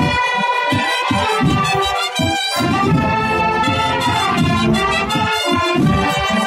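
A large wind band with prominent trumpets and trombones playing sustained full chords, with low notes pulsing underneath; the sound dips briefly about two seconds in.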